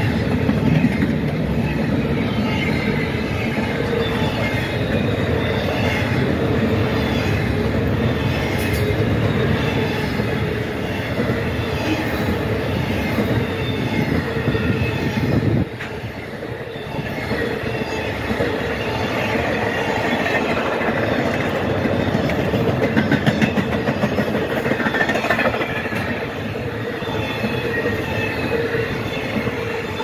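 Double-stack intermodal freight train passing close by: a loud, steady rolling of steel wheels on rail, with wheel squeal and clickety-clack over the rail joints. The loudness dips briefly about halfway through, then picks up again.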